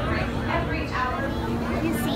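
People's voices talking, not clearly made out, over a steady low hum.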